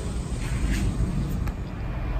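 Low, steady background rumble with a couple of faint clicks.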